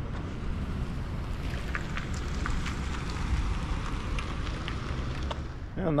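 Wind on the microphone: a steady, uneven low rumble with a few faint ticks through the middle.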